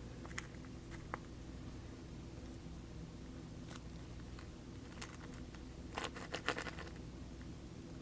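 Faint clicks and taps of small plastic RC parts being handled as shafts are pushed onto a Traxxas T-Maxx rear differential, with a quick cluster of clicks about six seconds in, over a low steady hum.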